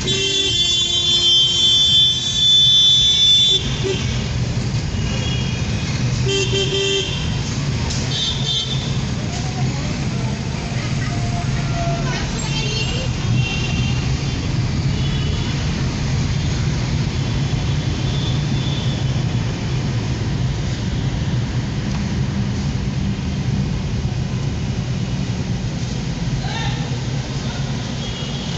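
City traffic heard from inside a car: a steady low rumble of engine and road noise. A loud vehicle horn sounds for about three and a half seconds at the start and again briefly around six seconds in, and fainter horns from other vehicles sound now and then later on.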